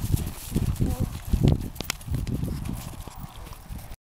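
Horses walking on a dry dirt and grass trail: low thudding hoofbeats throughout.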